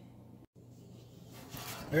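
Quiet kitchen room tone with a steady low hum; the sound drops out for an instant about a quarter of the way in, and a soft hiss rises near the end.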